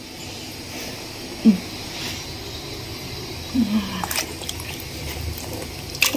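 Water trickling steadily while diced eggplant is rinsed in a steel bowl, with a sharp click about four seconds in.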